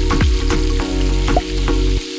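Sizzling sound effect like meat frying on a hot grill, over music with steady notes and a repeating deep bass beat.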